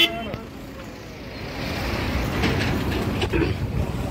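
Low, steady rumble of vehicle engines and road traffic close by.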